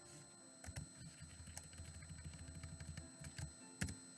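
Faint room tone with scattered soft clicks and a low rumble, and one sharper click near the end.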